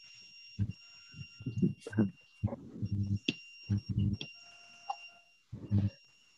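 Short snatches of voices over a video call, with a faint steady high-pitched electronic tone, like a beep or alarm, sounding on and off beneath them.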